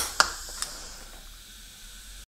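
Sharp metal clicks from a VW switchable water pump and the tool in its housing port on the bench: one right at the start, another a fifth of a second later, a smaller one just after, then a faint hiss that fades away.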